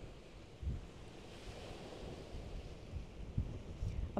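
Wind rumbling on the microphone over a steady hiss of sea and wind, with a couple of short low thumps.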